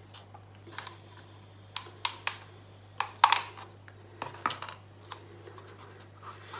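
Irregular light clicks and taps, about a dozen, from handling the plastic paint cup and sink strainer while readying an acrylic pour; the loudest come near two seconds and just after three seconds.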